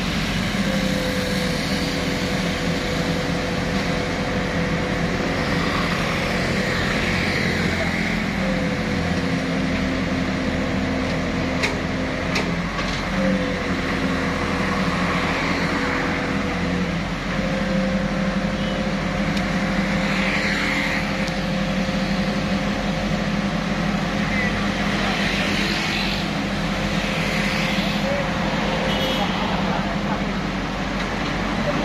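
Truck-mounted hydraulic crane running under load: a steady whine over a low engine drone, the whine dipping in pitch and settling again about three times as the load is swung.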